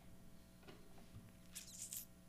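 Near silence: room tone with a few faint clicks, and a brief soft rustle near the end.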